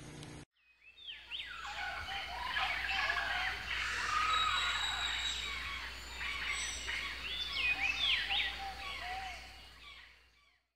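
A chorus of many birds singing and calling at once: overlapping chirps and whistles sliding up and down in pitch, over a low steady rumble. It fades in about a second in and dies away at the very end.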